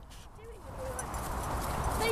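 Hoofbeats of a pony trotting over grass, growing louder as it comes closer. A faint voice is heard in the first second.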